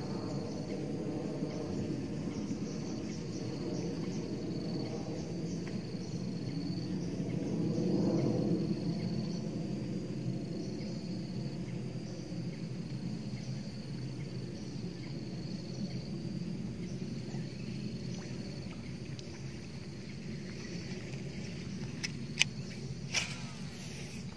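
Outdoor ambience: insects such as crickets or cicadas keep up a steady thin, high-pitched drone over a low rumble that swells and fades about eight seconds in. A few sharp clicks come near the end.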